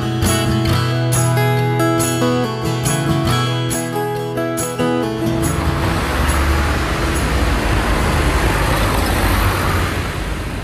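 A band playing a song with held chords and a steady beat of bright strikes, fading out about halfway through. It gives way to a steady low rumbling background noise.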